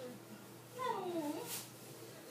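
A domestic cat meowing once, a single drawn-out call of under a second near the middle that falls in pitch and bends up again at its end.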